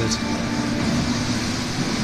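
Steady whirring rush of a running projector's cooling fan, with faint steady hum tones and no beat.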